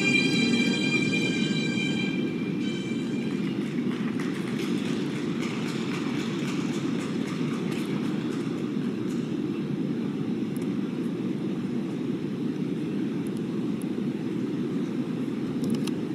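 Blues program music fading out in the first couple of seconds, then the steady low rumble of an ice arena hall with faint scattered clicks.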